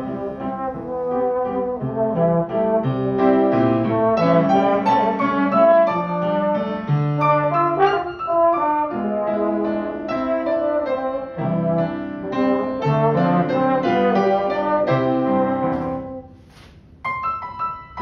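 Slide trombone playing a melody of sustained notes with piano accompaniment. Near the end the music drops away for about a second, then both resume.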